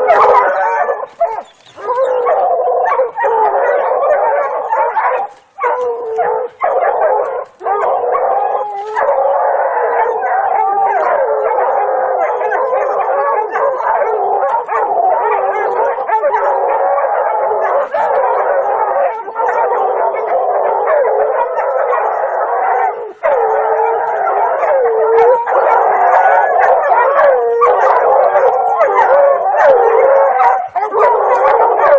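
Dogs barking and howling almost without a break, many overlapping voices wavering in pitch, with a few brief pauses.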